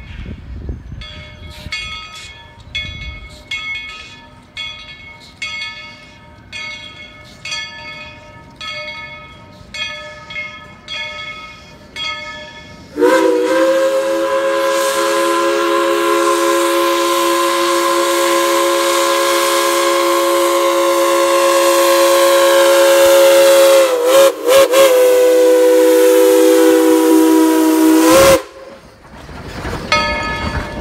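Steam locomotive bell ringing steadily, about one and a half strikes a second. It gives way to one long, loud steam whistle blast of several chime notes lasting about fifteen seconds, which wavers briefly near its end and then cuts off. The bell is heard again near the end.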